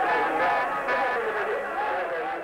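A man's voice, the football match commentary, running on over stadium crowd noise.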